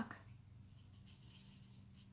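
Faint scratching of a Stampin' Blends alcohol marker tip moving in small circles on cardstock as the ink saturates the paper, over a low steady hum.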